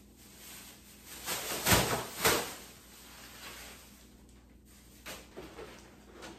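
Plastic trash bag being handled: rustling and flapping, with two loud swishes about two seconds in, then a few faint rustles.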